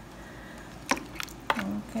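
Three sharp clicks from handling around the cooking pot, about a third of a second apart in the second half, over a low steady hum.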